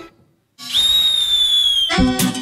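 A shrill whistle gives one long blast of about a second over a hiss, its pitch sagging slightly just before it stops. Dance music cuts off at the start, with a brief hush before the whistle, and comes back right at the end.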